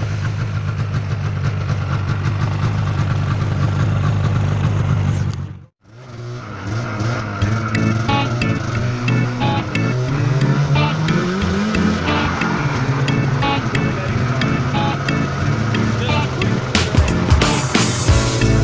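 Yamaha 600 snowmobile engine running steadily under way. About five and a half seconds in the sound cuts off abruptly, and background music takes over for the rest.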